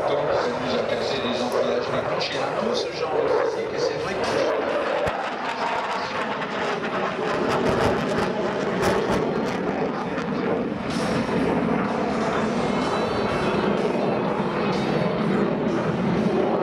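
Steady, loud jet noise from a Dassault Rafale's two Snecma M88 afterburning turbofans as the fighter manoeuvres overhead, mixed with a voice and music.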